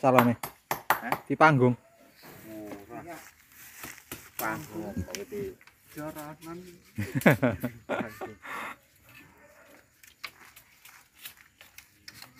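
Split bamboo slats knocking and clacking against each other as a slat is worked through a woven bamboo panel: a quick run of sharp knocks in the first second or two, then scattered knocks later. Voices talk in between.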